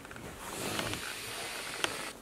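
Steady airy hiss of a long drag on a box-mod vape, lasting about a second and a half, with a short sharp click near the end.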